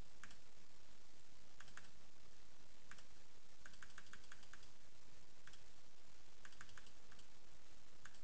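Faint computer mouse clicks, mostly single with a few short runs, including a quick run of about six some four seconds in.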